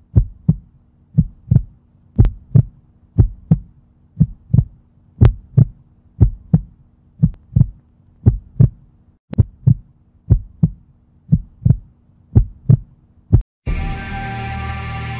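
Heartbeat sound effect: paired low thumps, lub-dub, about once a second, over a faint steady hum. The beat stops shortly before the end, where music comes in.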